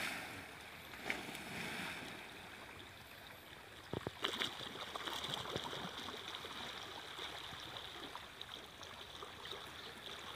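Fast, muddy river water rushing along an eroding earth bank, a steady rushing noise, with a few sharp clicks about four seconds in.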